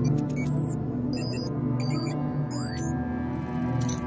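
Dark ambient background music: a low sustained drone with scattered high electronic blips and a short rising chirp about two and a half seconds in.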